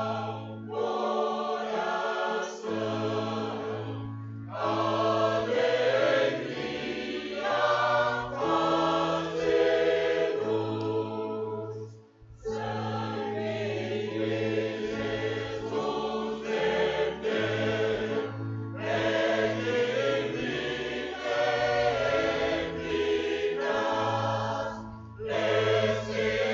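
Church choir singing a hymn with instrumental accompaniment, in phrases over steady low held notes, with a short break between phrases about twelve seconds in.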